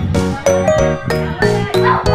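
Background music: a bright, bell-like melody over a quick, even beat.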